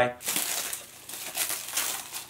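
Clear plastic packaging bag crinkling as it is handled.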